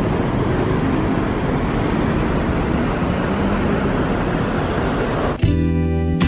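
Steady city street traffic noise. About five and a half seconds in, strummed guitar music cuts in suddenly.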